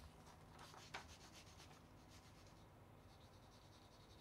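Faint rubbing and scraping of a sheet of paper slid under a 3D printer's nozzle, the paper test for the nozzle-to-bed gap during bed levelling; a soft click about a second in.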